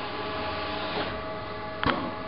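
Packing-station machinery (case former and tape sealer) running with a steady hum of several constant tones, and a sharp mechanical clack just before the end.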